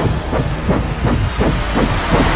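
Action-film sound effects of a big-rig truck and a helicopter: a heavy engine rumble under a hiss, with quick repeated chopping pulses from the rotor.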